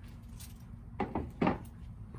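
Handling noise of a tennis racket being set down and a racket bag being reached into: a couple of short knocks about a second in, over a low steady hum.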